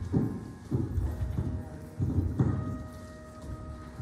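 Slow keyboard music in a church: low notes struck roughly once a second, with a higher note held through the middle.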